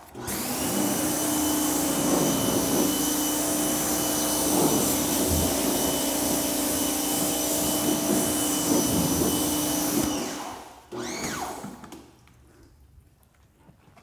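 Pressure washer running and spraying water onto a car's side panels, a steady motor hum under the hiss of the jet. It cuts off about ten seconds in.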